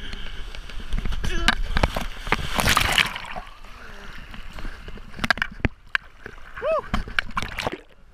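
Shallow seawater splashing and sloshing close to the microphone as people run and wade into the sea, loudest in the first three seconds, then scattered splashes. Laughter and a shout over it.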